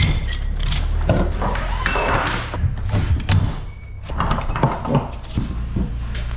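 Ratchet strap being released and unhooked from a load in a trailer: repeated metal clicks and clanks from the ratchet buckle and hooks, a few short metallic rings about two seconds in, and thuds on the trailer floor, over a steady low rumble.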